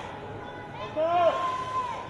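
A voice calling out from the audience, one long drawn-out shout about a second in, over the murmur of the crowd in a large hall.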